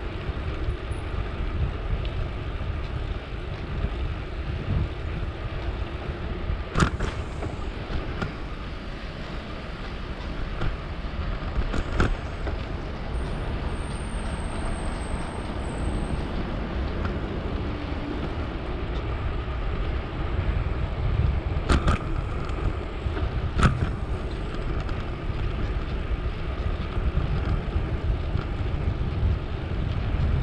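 Wind rushing over the microphone of a camera on a moving gravel bike, a steady noise heaviest in the low end. Four sharp knocks come through it, two in the first half and two close together past the middle.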